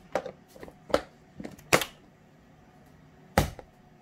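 Plastic snap-lock food-storage containers being handled and set down on a countertop and on one another: four sharp plastic clacks, the loudest a little under two seconds in.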